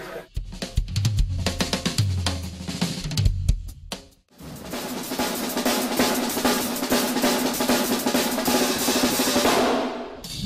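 Drum kit played in two passages: first a phrase of separate hits with low drums ringing, then, after a short break about four seconds in, a fast dense run of rapid strokes.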